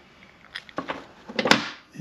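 Handling noise from a removed motorcycle shifter cover: a few light clicks, then one sharp metal clack about one and a half seconds in as the cover is set down on the workbench.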